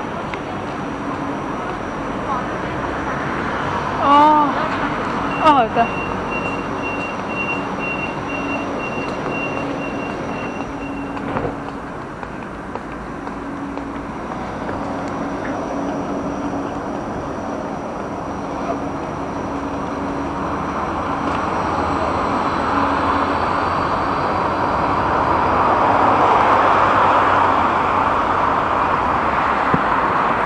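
Steady street traffic noise at a tram stop. A person's voice calls out in two short bursts about four and five and a half seconds in, a high beeping tone sounds for several seconds after, and a vehicle approaches and grows louder near the end.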